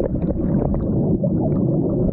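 Fast-flowing water churning with dense air bubbles, heard from underwater: a steady low rumble with a constant crackle of small bubble ticks.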